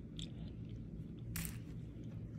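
Quiet chewing of a mouthful of crunchy granola and fruit, with a few faint clicks and one short, louder scratchy noise about one and a half seconds in.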